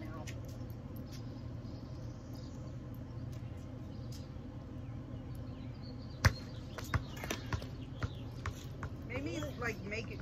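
A ball and beer can dropped onto pavement: one sharp knock about six seconds in, followed by a few lighter knocks as they bounce and settle, over a steady low hum.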